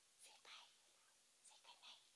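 Near silence broken twice by faint, short whispers.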